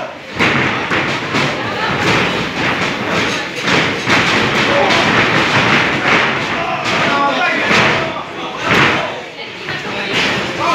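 Repeated thuds of pro wrestlers' strikes and bodies hitting the ring canvas, under steady crowd shouting.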